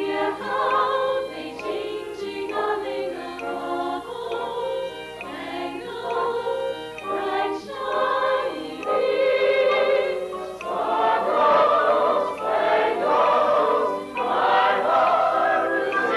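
Musical theatre singing with accompaniment: voices with vibrato, swelling into a louder, fuller chorus about ten seconds in.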